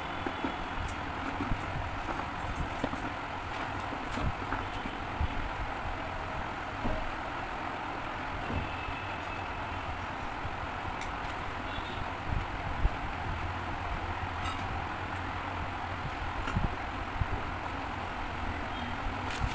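Steady background noise with scattered light clicks and taps as wooden spring clothespins are handled and pulled apart.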